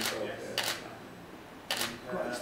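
DSLR camera shutter firing three times, sharp clicks a little over half a second and then about a second apart.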